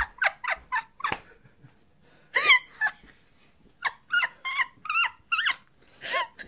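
A woman's high-pitched, squeaky laughter in short repeated bursts, stifled behind her hand, with a quiet gap in the middle before a further run of giggles.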